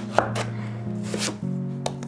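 A knife cutting through a raw winter squash on a wooden tabletop: a few short, sharp knocks and clicks as the blade works through the hard flesh, with soft music underneath.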